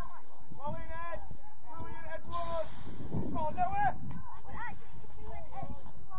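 Short, high-pitched shouts and calls from children playing football, several overlapping voices, over a steady low rumble from wind on the microphone.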